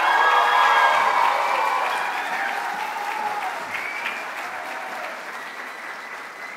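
Audience applauding in a large auditorium, starting at full strength and slowly dying away.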